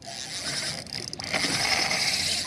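Spinning reel's drag buzzing as a hooked fish pulls line against it, growing louder a little past halfway through.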